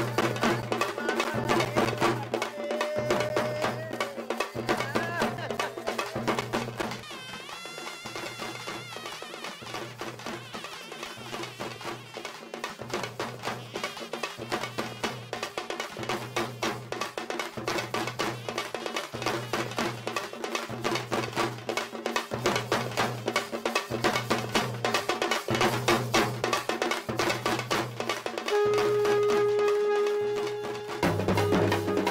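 Fast festival drumming on traditional Tamil thappu (parai) frame drums struck with sticks: rapid strokes over a deeper beat about once a second, with a brief wavering pitched line about eight seconds in.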